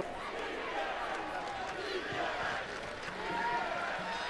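Steady stadium crowd noise from a college football crowd, with faint, indistinct shouting voices in it.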